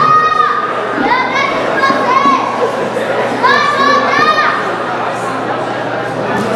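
Spectators shouting high-pitched calls, about four shouts of roughly half a second each, over the murmur of the crowd.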